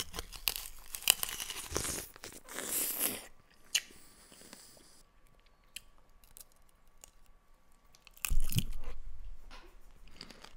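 Close-miked ASMR eating: biting into and chewing a glossy green fruit with loud, dense crunching for about three seconds. A quieter stretch follows with a few soft mouth clicks, and then a second loud burst of crunching about eight seconds in.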